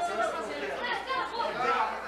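A crowd of people talking at once: overlapping, indistinct chatter with no single voice standing out.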